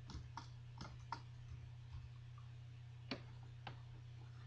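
Computer keyboard keys being typed, a handful of sparse, separate clicks with a longer gap in the middle, over a steady low electrical hum.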